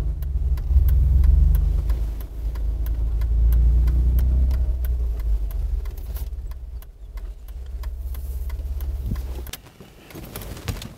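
Mercedes-Benz G-Class SUV engine running with a deep, steady rumble as it drives slowly and pulls up, with light ticks over it. The rumble cuts off shortly before the end.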